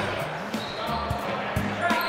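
Basketballs bouncing on a hard gym floor: short dull thumps, each with a brief low ring, coming irregularly a few times a second, with voices faintly in the background.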